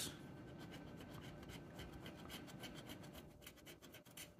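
A metal coin scratching the latex coating off a scratch-off lottery ticket: faint, fast, steady rasping strokes.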